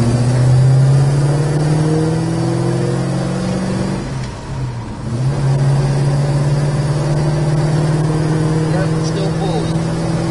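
The 1970 Dodge Charger's 383 four-barrel V8 is heard from inside the cabin while driving, running steadily with its note slowly rising. About four seconds in it drops away briefly, then picks up again and holds steady.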